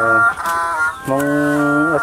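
A man's voice in long, drawn-out syllables held at a level pitch, one at the start and a longer one about a second in, with a faint steady high tone beneath.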